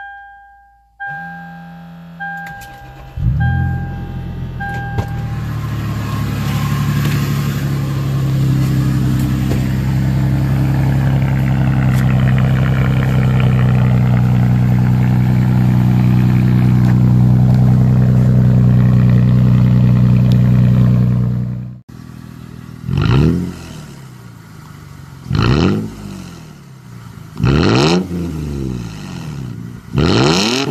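2006 Toyota 4Runner's 4.0-litre V6 with its muffler deleted (resonator kept) and a 3-inch tip. It cranks and starts about three seconds in, over a dashboard warning chime beeping several times, then idles steadily and loudly. Later it is revved in short blips, each rising and falling in pitch.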